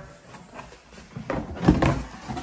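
Cardboard shipping box being tipped and handled as a plastic five-gallon bucket is pulled out of it: faint rustling at first, then a run of scraping and knocking from the box and bucket in the second half.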